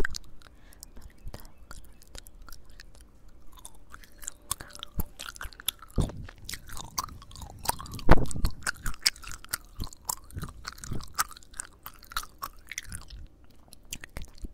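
Gum chewing and wet mouth sounds recorded right at the microphones of a handheld recorder: a close, continuous run of sticky clicks, smacks and squelches, with the loudest smack about eight seconds in.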